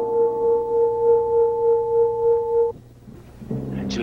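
Dramatic TV-drama music sting ending on a long held note with a slow wavering swell, which cuts off sharply about two-thirds of the way in. Shortly before the end, a low, steady music chord starts.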